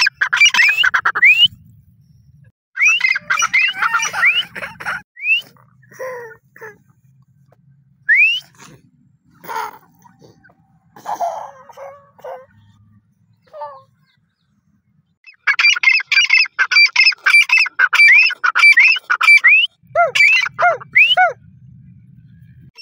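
Grey francolins calling: loud bursts of rapid, repeated notes broken by rising whistled upsweeps. One burst comes at the start and another about three seconds in, then scattered single calls, then a long burst through the second half.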